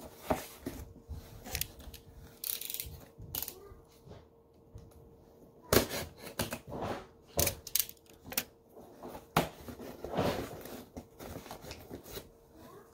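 A cardboard shipping box being cut open with a box cutter: irregular knocks, scrapes and rustles as the blade slices the packing tape and the cardboard is handled. There are longer scraping stretches near the start and near the end, and a sharp knock about halfway through.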